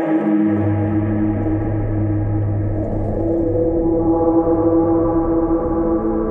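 Ambient music drone: several held tones layered together, with a deep low note that comes in about half a second in and drops away a little past the middle.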